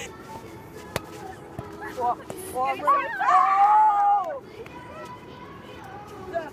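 Young people's voices calling out without clear words, rising to one long drawn-out cry between about three and four seconds in; a single sharp click about a second in.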